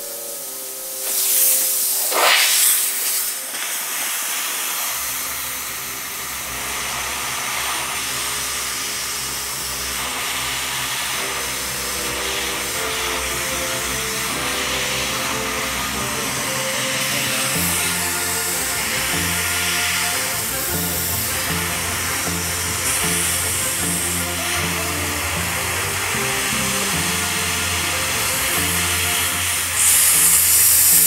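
Espresso machine steam wand hissing as steam is forced into a guitar's neck joint to soften the glue, with two loud spurts about one and two seconds in. Background music with a steady beat comes in about five seconds in and plays over the hiss, its bass getting fuller later on.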